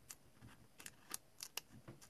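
A small blade cutting into a thin dry-transfer decal sheet: a handful of faint, short snipping clicks.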